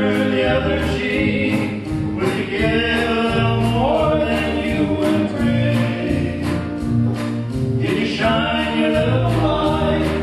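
Live gospel song: several men's voices singing together over acoustic guitar.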